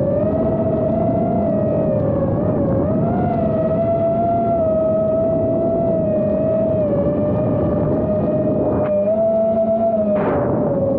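Chase quadcopter's motors and propellers whining in flight: one steady tone that wavers slightly with throttle, over wind noise. Near the end a lower hum joins in briefly.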